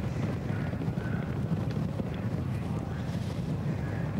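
Trackside sound of a field of steeplechase horses galloping on turf: a steady low rumble of hooves, with wind on the microphone.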